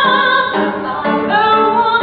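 A woman singing a musical theatre song, holding a few notes that step from one pitch to the next.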